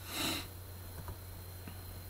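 A man's short sniff near the start, followed by a few faint clicks over a steady low hum.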